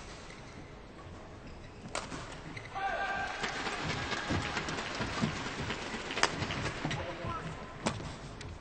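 Badminton arena crowd noise that swells with voices and shouts about three seconds in, broken by a few sharp cracks of racket strikes on the shuttlecock.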